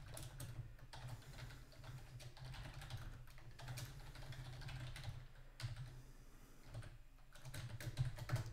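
Computer keyboard typing: a run of faint, irregular keystrokes with a couple of brief pauses.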